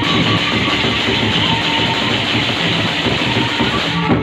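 Sasak gendang beleq ensemble playing loudly, dominated by the rapid, dense clashing of many pairs of hand cymbals (ceng-ceng), with drums beneath and no melody line.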